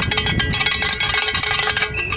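A hand-held bell, like a cowbell, clanked rapidly and without pause, many strikes a second over a steady ringing pitch. It is noisemaking at a loud street protest, heard through a phone's live stream.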